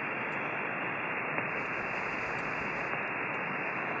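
Software-defined HF amateur radio receiver's audio: a steady hiss of band noise and static, with no signal being copied. The hiss is cut off sharply at about 3 kHz by the receive filter.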